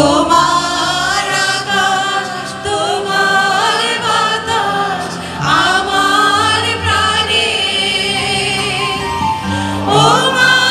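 A group of women singing a Bengali song together into handheld microphones, amplified through the hall's PA.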